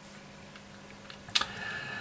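Quiet room tone, then a single sharp click about one and a half seconds in, followed by a faint brief rustle.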